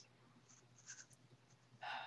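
Near silence in a pause between speakers, with a few faint small clicks about a second in and a short faint sound near the end.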